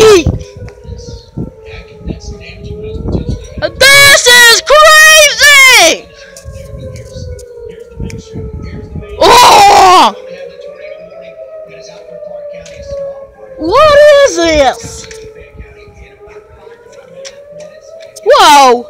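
Outdoor tornado warning siren sounding a steady wail that slowly rises and falls, signalling a tornado warning. A loud, close voice breaks in over it three times with long wailing cries.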